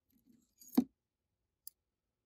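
A multimeter test probe and hand being set down on a wooden workbench: a soft rustle, then one sharp knock a little under a second in, and a faint tick near the end.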